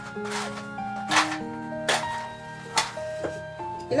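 Soft background music of long held notes, with a few short scratchy strikes over it, about four in all: a match being struck to light a candle.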